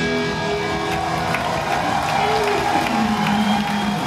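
A live rock band's closing electric guitar notes ringing out in sustained tones as the song ends, with the crowd cheering and applauding.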